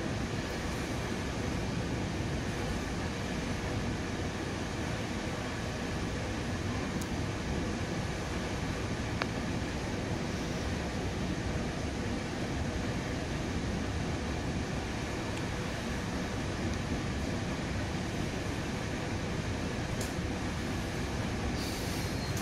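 Steady running noise of a commuter train at speed, heard from inside a passenger coach: the wheels rolling on the rails and the car body rumbling, with a few faint clicks.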